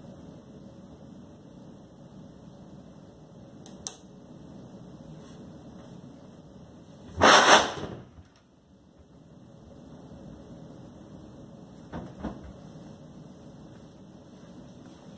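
Methanol vapour igniting inside a large plastic water-cooler jug (whoosh bottle): one loud, sudden whoosh about seven seconds in, lasting under a second, as the flame sweeps through the bottle and jets out of its neck.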